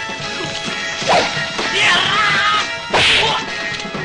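Two sharp fight-scene punch and hit sound effects, about two seconds apart, over background film music.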